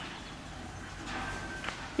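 Quiet arena ambience with faint horse hoofsteps on a soft, hay-strewn dirt floor.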